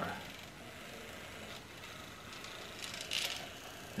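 Small DC hobby motor with an off-balance weight running faintly on the art bot, with light clicks and a brief scratchy rustle about three seconds in as the cup and marker legs are handled.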